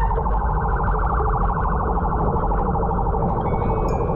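Wind and wet-road rumble on the camera of a road bike riding in heavy rain, with a rapidly pulsing, alarm-like tone that fades over the few seconds.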